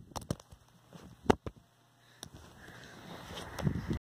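A smartphone, recording through its own microphone, clattering on the floor after being dropped: a few sharp knocks as it bounces, the loudest about a second in. Low handling noise follows near the end as it is picked up.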